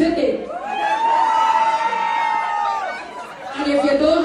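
A voice holding one long, high, steady note for about two and a half seconds, sliding up into it at the start, over faint crowd chatter.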